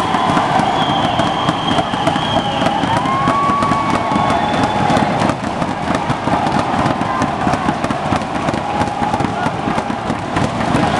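Handball crowd in a sports hall cheering and shouting, with a dense run of sharp cracks throughout and a few long held high tones over the noise, one rising about three seconds in.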